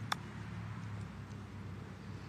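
A golf club striking the ball on a short chip shot: one sharp click about a tenth of a second in, over a low steady background hum.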